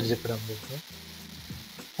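A man's voice trailing off, then a steady hiss with a faint low hum from the recording microphone.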